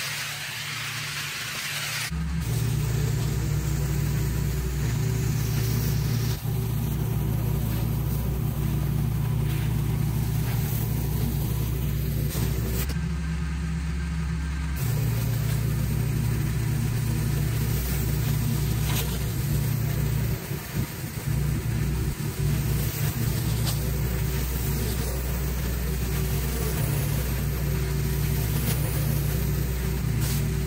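Commercial pressure washer's gas engine running steadily, a deep even hum, with the hiss of high-pressure water on concrete. The first two seconds hold only the spray hiss; then the engine hum cuts in abruptly and stays loud.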